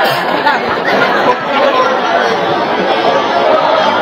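Many voices talking at once in a large hall: steady crowd chatter.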